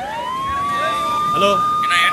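A siren: its pitch rises quickly at the start and then holds on a high steady note, with a brief voice heard about halfway through.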